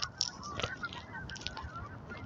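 A flock of birds calling faintly, many short overlapping calls.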